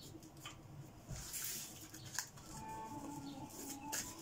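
A deck of cards being picked up and handled, with short papery rustles about a second in and a light click a little later. A faint held tone sounds through the second half.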